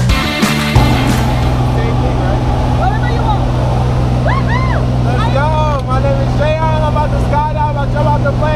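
Steady engine drone inside the cabin of a small skydiving jump plane in flight, with voices over it from about three seconds in. Music cuts off within the first second.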